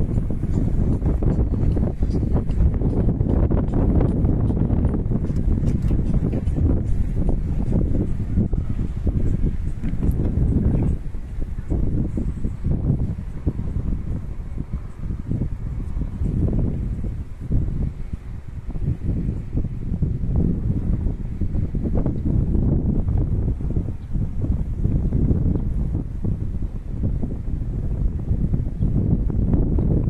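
Wind buffeting the microphone in gusts, a heavy low rumble that eases briefly a few times.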